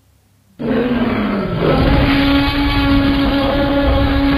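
Dinosaur (T. rex) roar sound effect. It starts suddenly about half a second in and is held at a steady pitch over a deep rumble.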